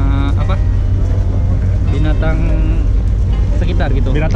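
Men talking in short stretches over a steady low rumble.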